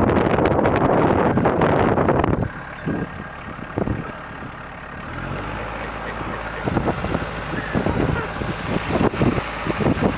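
Case IH Farmall 45 compact tractor's diesel engine running loudly for about the first two and a half seconds while it jump-starts a car, then a quieter, steady engine idle.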